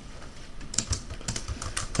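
Keystrokes on a computer keyboard: a run of quick, light key clicks as text is typed.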